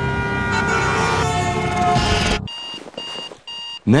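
A loud, sustained sound made of many steady tones cuts off suddenly about two and a half seconds in. It gives way to a digital bedside alarm clock beeping in short, even beeps, about two a second.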